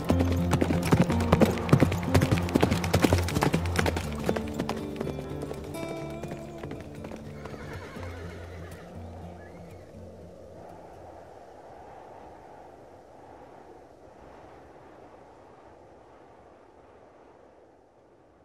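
Horse hooves clip-clopping over background music, the hoofbeats thick in the first few seconds, then both fading out slowly until only faint music remains.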